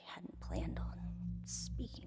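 Whispered, breathy vocal sounds without clear words over a low steady hum that comes in about a third of a second in, with a sharp hiss near the end.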